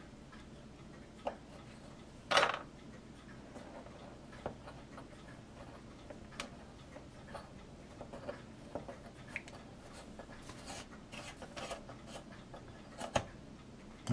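A twist drill bit turned by hand in a plastic model part, reaming out a hole that is too tight: faint, irregular small clicks and scrapes, with one louder scrape about two seconds in.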